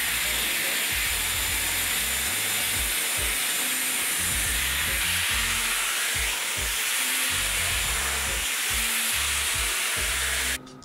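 Corded hot-air hair styler blowing steadily as it dries and styles wet hair, under background music with a low bass line.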